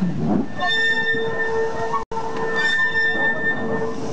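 Steel wheels of BR Standard Class 2MT 2-6-0 steam locomotive 78022 squealing against the rail on a curve as it rolls slowly past, a steady high ring over the rumble of the wheels. The ring begins about half a second in and breaks off for an instant about two seconds in.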